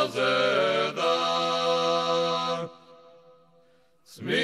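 Choir singing an Orthodox church chant: several voices move together between notes and hold a long chord, which stops about two and a half seconds in, leaving near silence.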